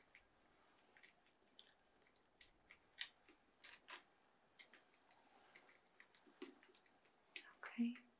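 Soft, sparse clicks of computer keyboard keys, tapped at irregular intervals, with a short louder sound near the end that falls in pitch.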